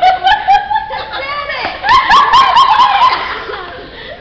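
Laughter close to the microphone, in two bouts: a short one at the start and a longer one about two seconds in, each a quick run of 'ha' pulses.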